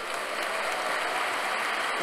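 Large audience applauding, a steady wash of clapping throughout.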